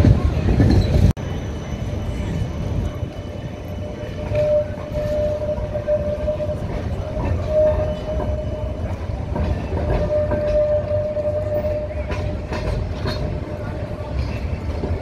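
Street noise breaks off abruptly about a second in. An articulated electric city tram then passes close by: a steady low rumble of wheels on rails, with a steady high whine that comes in about four seconds in and fades near the end.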